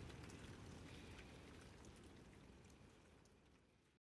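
Near silence: a faint hiss with light crackle that fades out steadily and ends in total silence.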